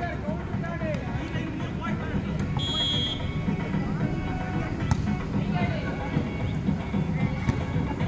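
Referee's whistle blown once, short and high, about two and a half seconds in, over a steady murmur of spectators' voices. A single sharp hit follows about five seconds in.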